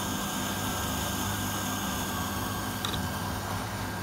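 Bubble Magus QQ1 protein skimmer running: its Rock SP600 pump gives a steady low hum under an even hiss of water and air bubbles as it starts producing foam.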